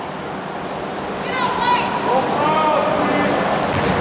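Indistinct voices calling out across a large, echoing gymnasium, over steady background noise from the hall.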